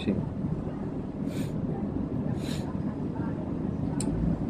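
Steady low background rumble with two brief soft hisses, about a second and a half and two and a half seconds in.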